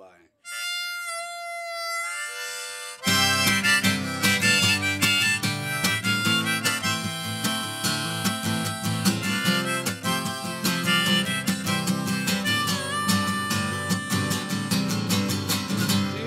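Harmonica playing held notes on its own, stepping down in pitch. About three seconds in, a strummed acoustic guitar comes in and the two play the song's intro together.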